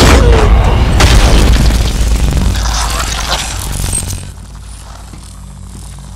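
Film action sound effects: a heavy boom with a deep rumble and crashing, shattering glass as a man is blasted through a glass wall. A second sharp hit comes about a second in, and the din drops away after about four seconds.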